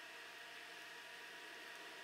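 Near silence: a faint, steady room hiss.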